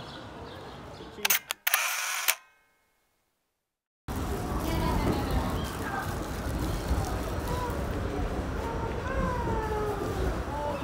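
A few sharp camera shutter clicks and a short burst of them, then a gap of dead silence, then the steady rumble of a subway car running, heard from inside the car, with faint voices over it.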